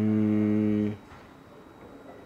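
A man's steady closed-mouth "mmm" hum at one pitch, lasting about a second and stopping abruptly.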